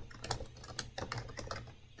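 Computer keyboard being typed on: a quick, uneven run of keystrokes as a web address is entered.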